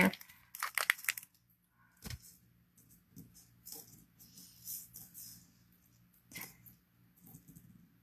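Quiet handling sounds: a small plastic bag crinkling and vintage buttons clicking against each other and the tabletop as they are tipped out and sorted, with a few separate clicks.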